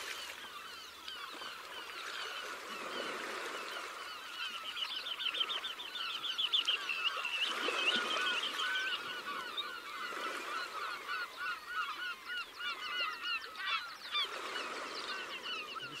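A flock of birds calling: many short, repeated calls overlapping in quick succession, busiest in the middle of the stretch.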